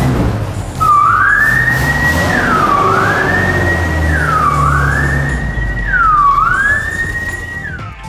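Fire engine siren sounding a repeating sweep: each cycle rises slowly and drops quickly, about four cycles starting about a second in. The truck's engine runs underneath.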